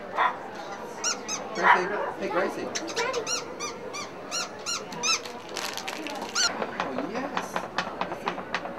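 Squeaky toy squeezed over and over, a string of short, high squeaks that each bend up and down, about two a second, to draw a Yorkshire terrier's attention for a photo.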